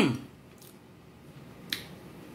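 A woman's hummed 'mmm' of enjoyment over a mouthful of noodles, falling in pitch and fading out at the start. Then it is quiet, with one short, sharp mouth click or lip smack near the end.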